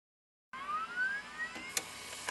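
After half a second of silence, an electronic tone sweeps upward in pitch for just over a second, then a sharp click, over a faint steady hiss: an intro sound effect.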